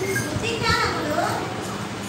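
A young child's voice calling out once, high-pitched and lasting about a second, over a steady low hum.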